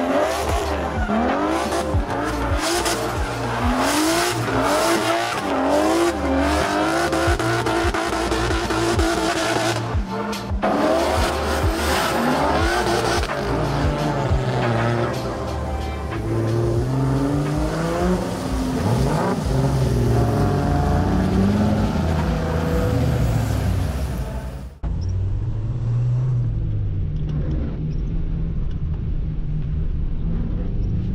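Drift cars sliding on wet tarmac, engines revving up and down hard with tyre squeal. About 25 s in the sound switches to a single engine heard from inside the car's cabin, duller and lower, still revving up and down.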